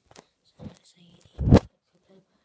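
Handling noise on the recording device's microphone: short rubbing and scraping sounds, then a loud thump about one and a half seconds in.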